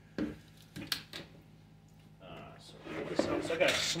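A few light clicks and knocks as things are moved about in a hard plastic case. Near the end comes louder rustling as a soft tool bag is pulled out of the packed case.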